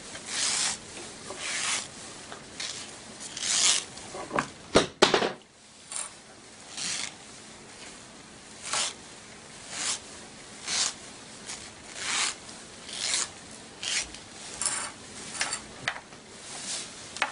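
Nylon tulle rustling and scraping as it is bunched by hand and gathered along the elastic, in repeated swishes about once a second, with a couple of sharp clicks about five seconds in.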